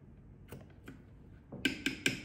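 A few faint clicks, then a quick run of light clicks and taps near the end, from a spoon and sauce bottles being handled as seasonings are measured into a plastic food-chopper jar.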